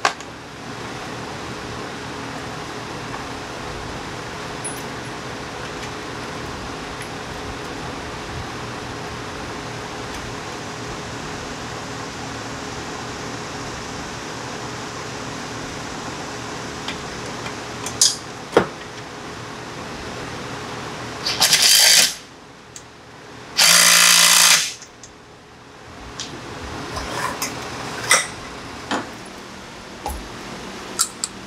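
A cordless power driver runs in two short bursts about two-thirds of the way in, driving the bolts that hold seat-belt hardware to a golf cart's rear seat frame. A steady fan or air-conditioner hum runs beneath, with a couple of small metal clicks before the bursts.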